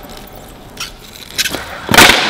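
A couple of faint clicks, then a single sharp, loud crack near the end as the tail of a prototype carbon-fibre frame skateboard is popped against a concrete floor for a flip trick.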